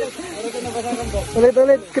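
A person's voice over the steady hiss of a shallow stream running over rocks.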